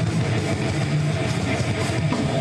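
Live rock band playing: amplified electric guitars, bass guitar and a drum kit together in a dense, steady, loud wall of sound.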